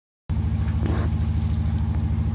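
An engine idling steadily, with a low, even, rapid pulse; it cuts in suddenly just after the start following total silence.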